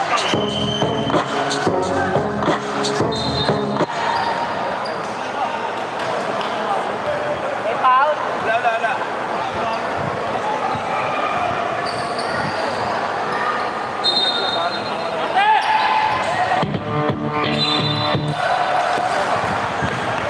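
Live game sound in an indoor basketball hall: the ball bouncing on the court amid the murmur of voices from players and spectators. Short stretches of music come in during the first few seconds and again near the end.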